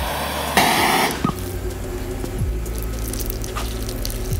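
Hissing of a handheld torch flame heating a steel drill bit, with a brief, louder burst of hiss just after half a second in. Background music with low, steady tones plays underneath.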